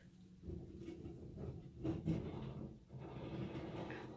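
Wheeled garbage can being rolled, an uneven low rumble with a few louder bumps.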